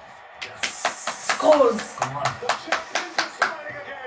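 A quick run of sharp hand claps, about five a second, with a short falling vocal cry about one and a half seconds in.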